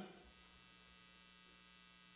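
Near silence: a faint steady hum with a thin hiss, the background of the sound system.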